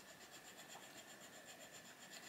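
Faint scratching of an emerald-green Arteza Expert coloured pencil shading on colouring-book paper, barely above near silence.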